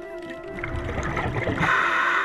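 Background music with sustained steady tones. In the second half a rush of noise swells and is loudest near the end.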